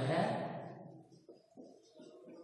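A man's voice trailing off over the first half second, then faint low pulsing sounds in the second half.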